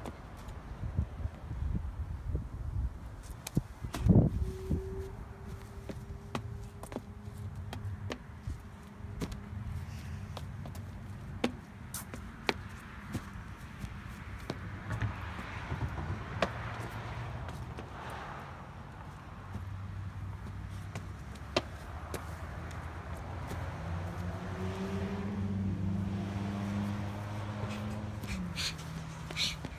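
Road traffic: car engines running and passing, with humming tones that rise toward the end. Scattered clicks and knocks run through it, with a loud thump about four seconds in.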